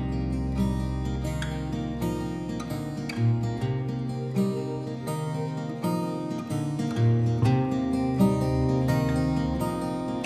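Instrumental passage of a folk song played on guitars: acoustic guitar strumming with other plucked guitar notes over it in a steady rhythm, without singing.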